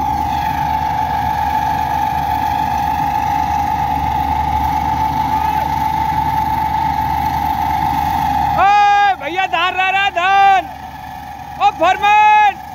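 Combine harvester engine running steadily with a constant hum. Near the end, loud high-pitched held notes in short, stepped phrases cut in over it, twice.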